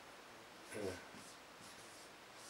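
A man's voice giving one short, soft untranscribed syllable just under a second in, over quiet room tone, with a few faint high scratching or rustling sounds.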